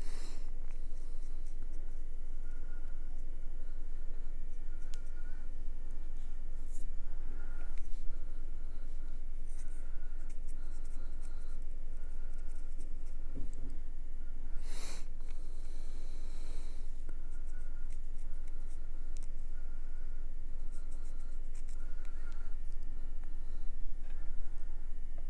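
Light handling sounds of painting a small model by hand: faint clicks and soft rustles over a steady low hum, with one louder rustle about fifteen seconds in.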